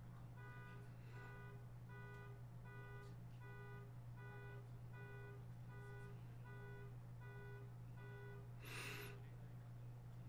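Faint electronic alarm-type beeping: about a dozen short, even beeps a little under a second apart, over a steady low hum. A brief breath-like rush of noise comes near the end.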